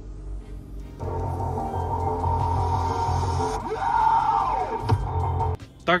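A music track played from an Android head unit through the car's four newly installed speakers, two front and two rear. It gets louder about a second in and cuts off abruptly near the end.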